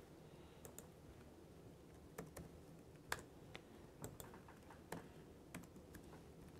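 Faint, irregular taps on a laptop keyboard: about a dozen single keystrokes with pauses between them, over quiet room tone.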